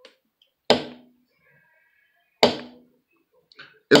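Two sharp strikes, a little under two seconds apart, of a mallet driving a smooth triangle leather beveler into leather laid on a granite slab, each an impression of a rope-twist tooling pattern.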